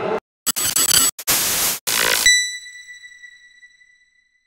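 Logo sound effect: several short bursts of static-like noise cutting in and out, then one high bell-like ding that rings on and fades away over about a second and a half.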